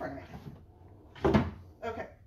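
A single short knock or clunk about a second and a quarter in, with a brief bit of voice near the end.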